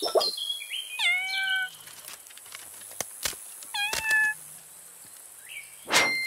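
Squeaky, meow-like vocal calls from a cartoon animal character: two short calls that drop in pitch and then hold, about a second in and near four seconds, with a few sharp clicks between them and a loud burst at the end.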